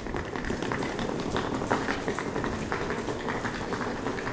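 Outdoor background noise in a pedestrian shopping street, with the faint footsteps of someone walking.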